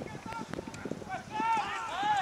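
Several people shouting over one another as a rugby tackle goes in, the calls getting louder about two-thirds of the way through, over short thuds of boots on the turf.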